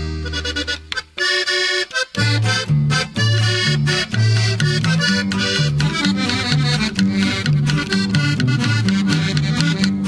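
Norteño band music with accordion: one song ends on a held chord that dies away about a second in, and after a brief break the next song's instrumental intro starts about two seconds in, accordion over a bass line stepping back and forth between two notes in a steady beat.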